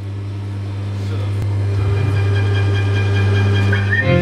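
A sustained low drone from the band's amplified instruments, held on one note and slowly swelling, with fainter higher tones coming in about halfway and a short rising note near the end, as the song starts.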